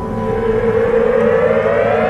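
Electronic theme music: a synthesizer riser that climbs steadily in pitch and grows louder.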